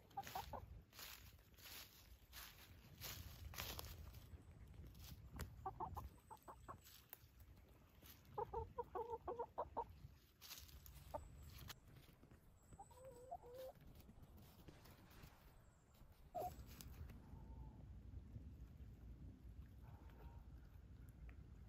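Americana hen clucking quietly while foraging: a few short clucks, then a quick run of about eight to ten clucks midway, and a couple of single calls later. Dry leaves crackle faintly under her at the start.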